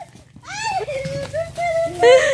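Children's voices calling out with wordless cries as they scramble for candy, including one long drawn-out call in the second half.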